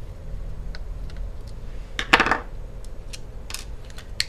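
Small light clicks and clinks of tiny screws and a screwdriver being handled over an opened laptop case, with one louder metallic clatter about two seconds in, over a low steady hum.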